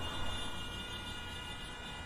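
Faint, steady background sound bed: a low rumble with a few thin, steady high tones held throughout.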